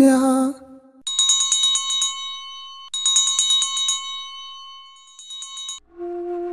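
Two runs of rapidly repeated, bright bell chimes, each ringing and fading away, the second starting about halfway through; a shimmering sound effect. A chanted male voice dies away in the first half second.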